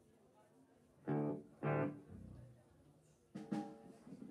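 A band's instruments sound three short, loud pitched notes on stage: two about a second in, half a second apart, and a third near the end, with little in between.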